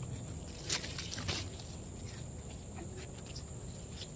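Leaves and twig rustling as a branch is handled, a few brief rustles about a second in, over a steady high insect drone in the background.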